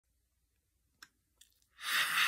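Two faint clicks, then near the end a man's loud breathy rush of air, like a sigh, as he opens his mouth to speak.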